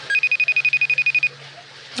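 Electronic telephone ring tone: a short blip, then a high trilling tone that flutters about fifteen times a second for just over a second and stops as the call is answered.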